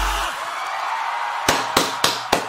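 An electro-pop track's heavy bass beat cuts off just after the start, leaving a faint hiss. About one and a half seconds in come three sharp hand claps close to the microphone.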